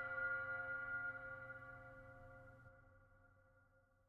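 A held chord of the backing music, a few steady tones that fade away and die out about three seconds in.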